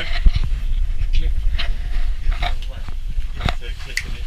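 Low rumble and scattered knocks and rustles of a handheld action camera inside a ski gondola cabin, with faint muffled voices.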